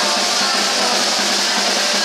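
Live rock band playing, the drum kit loudest: a dense wash of cymbals over the drums, with no vocal line.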